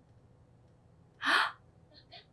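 A person's single short, sharp gasp about a second in, a quick rush of breath with no voiced words.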